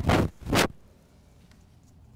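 Two short, loud rushes of breath about half a second apart, the effort breaths of lifting the body into crow pose, followed by quiet room tone.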